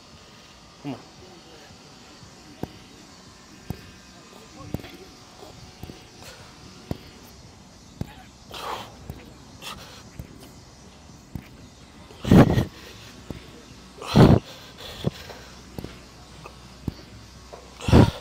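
A man breathing out forcefully and grunting with effort during a set of press-ups, the loudest two breaths about 12 and 14 seconds in. Faint sharp clicks come roughly once a second through the first half.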